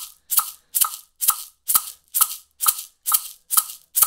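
A maraca shaken in steady quarter notes at about 132 beats per minute: a sharp, short rattle of the pellets on each stroke, a little over two strokes a second.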